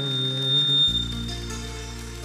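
Live tallava band music between sung phrases: sustained keyboard chords held steady, with a deep bass note coming in about a second in.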